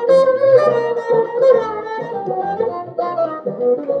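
Amplified electric bassoon playing a melody line over a looped groove of percussive key clicks, with a few deep thumps underneath.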